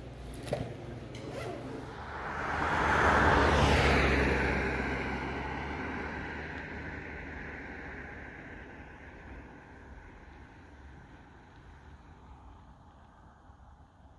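A road vehicle passing by: its tyre and engine noise swells to its loudest about three seconds in, then slowly fades away. A sharp click comes about half a second in.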